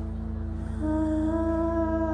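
A man humming one long held note into a microphone, coming in just under a second in, over a steady backing track.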